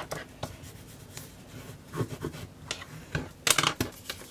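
Paper being pressed and smoothed by hand onto a cardstock page: soft rustles, scrapes and light taps, with a louder flurry of crisp rustling about three and a half seconds in.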